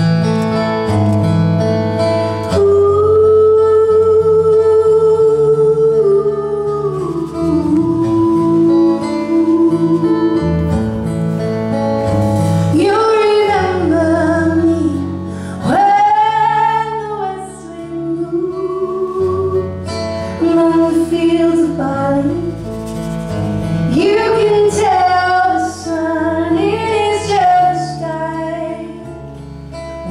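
Slow live band intro: acoustic guitars and bass hold steady chords under a sustained lead melody line that slides up into notes and bends between them.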